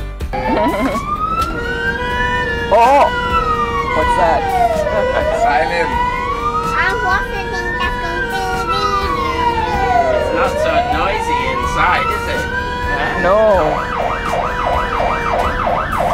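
Fire truck siren sounding a slow wail that rises and falls about every five seconds, switching to a fast yelp near the end.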